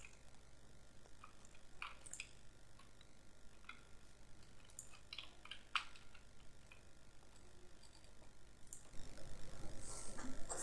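Faint, scattered clicks of a computer mouse and keyboard, a handful of separate clicks spread over several seconds.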